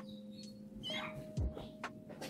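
A faint, short, high squeak from a two-day-old Bourke's parakeet chick being hand-fed, with a few soft clicks from the feeding stick, over a low steady hum.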